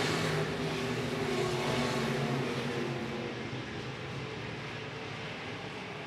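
IMCA stock cars' V8 engines running at race speed as the pack circulates the dirt oval, a steady mixed engine noise that slowly fades as the cars pull away down the back straightaway.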